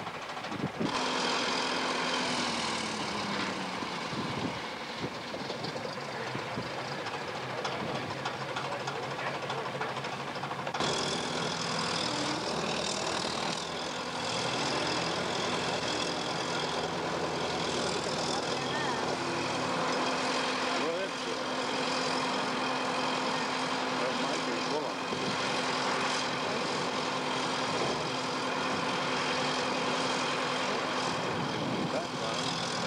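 A heavy engine running steadily, its pitch dipping briefly near the start, with indistinct voices mixed in.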